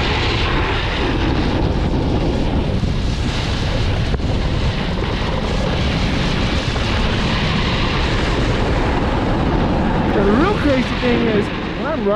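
Snowboard sliding and carving on hard, icy groomed snow: a steady, loud scraping rush of the base and edges over the snow, mixed with wind on the board-mounted camera's microphone.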